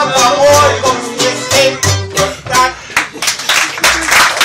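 Live acoustic band with guitar and double bass playing the last bars of a song: a melody line over deep bass notes, then a run of sharp strummed chords closing it out near the end.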